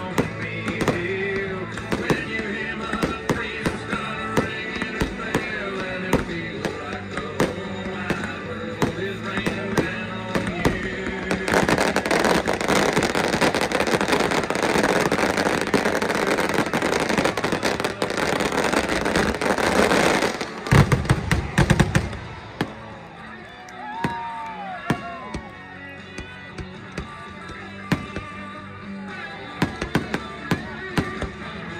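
Aerial fireworks shells bursting over music, with a steady run of bangs. From about 12 to 20 seconds it builds to a dense crackling barrage, a cluster of loud booms follows around 21 seconds, and then the bangs thin out to single reports.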